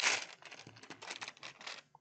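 A hand rummaging through a compartment of small plastic Lego connector pegs in a plastic sorting tray, a dense clicking rattle that is loudest at first and stops near the end.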